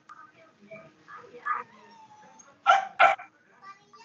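A dog barking twice in quick succession, two short loud barks about a third of a second apart, a little past the middle, over faint murmuring voices.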